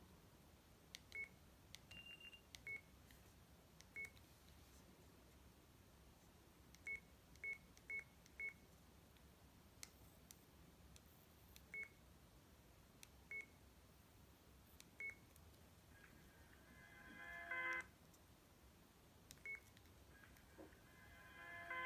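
Sagem myC2-3 mobile phone keypad tones: about a dozen short, single-pitch beeps as keys are pressed, irregularly spaced, with a quick run of four. Near the end a ringtone begins on the phone's speaker, growing louder for about two seconds before it cuts off suddenly.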